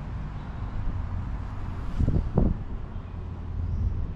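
Steady low outdoor rumble with a faint hum, with two brief low thumps close together about two seconds in.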